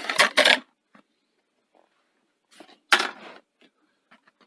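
The folded cover of a Betamax VCR's power supply board is worked off the board by hand with a rustle and a click. About three seconds in there is one sharp clatter as it is set down.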